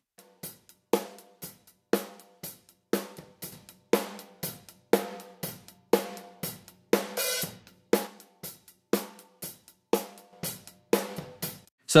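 Recorded drum kit heard through its overhead microphones alone: snare and kick hits about twice a second under hi-hat and cymbals, with little low end. A heavily compressed parallel copy of the overheads is switched in, making the cymbals louder and pushing the hi-hat wider.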